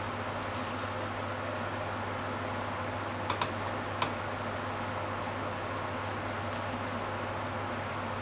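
Mountain yam (yamaimo) being grated on a plastic grater over a ceramic bowl: faint scraping strokes over a steady low hum and hiss, with three sharp taps, two close together about three seconds in and one about four seconds in, as the grater knocks against the bowl.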